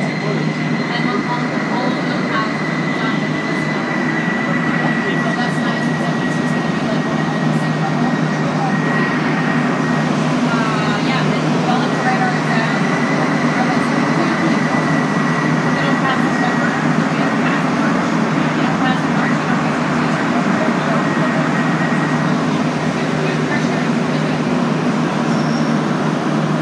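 A Montreal Metro Azur rubber-tyred train heard from inside the car as it runs from the platform into the tunnel: a loud, steady running noise that grows slightly louder. A thin, high whine sits over it and fades out about two-thirds of the way through.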